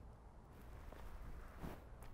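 Faint outdoor background with a steady low rumble and no distinct sounds.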